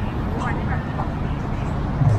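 Steady low rumble of city traffic with faint snatches of people's voices.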